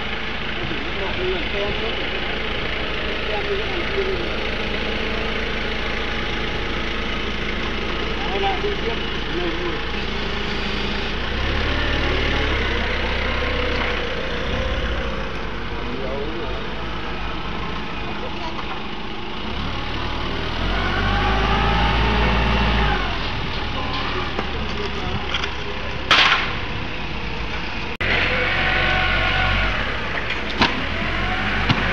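A vehicle engine idling under a steady yard din, mixed with voices. The engine's low rumble swells twice, around twelve and twenty-one seconds in. One sharp knock sounds near the end.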